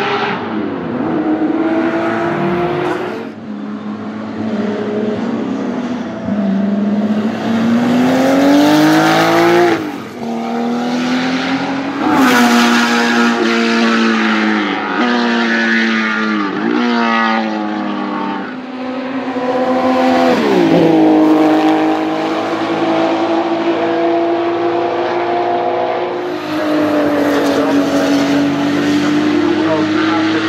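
Porsche 935 Kremer K3's turbocharged flat-six race engine on track, climbing in pitch under acceleration through the gears and dropping sharply on downshifts several times over, with a few steadier held stretches.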